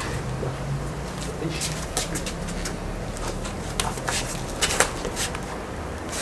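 Feet shuffling and scuffing on a stone patio and clothing rustling as two people grapple in a clinch, with a few short sharp clicks over a steady low hum.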